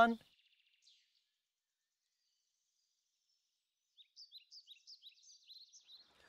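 A small bird chirping in quick short high notes, about four or five a second, starting after a few seconds of silence and running through the last two seconds.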